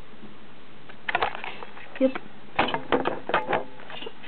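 Handheld camera being handled: clusters of quick clicks and knocks about a second in and again through the second half, over a steady hiss.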